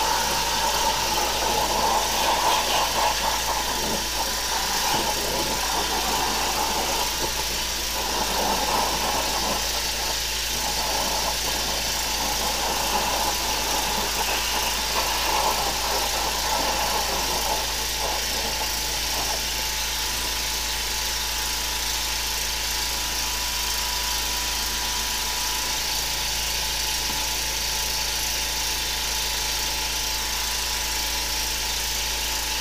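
High-pressure drain jetter running steadily while its hose and nozzle are fed down a greasy restaurant drain, a continuous machine drone with water hiss. The sound is uneven for the first 18 seconds or so, then settles into a steadier run with a thin steady tone.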